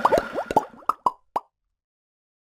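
Cartoon bubble sound effects: a quick run of short, bloopy plops as soap bubbles are blown from a wand, thinning out to a few spaced pops by about a second and a half in.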